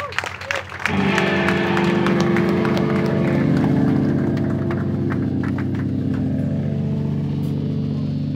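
Band's electric guitar and bass ringing on a loud, sustained held chord, after a few drum hits in the first second.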